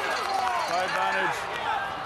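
A man speaking over steady stadium background noise.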